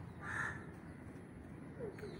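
A single short, harsh bird call near the start, such as a crow gives, lasting about half a second.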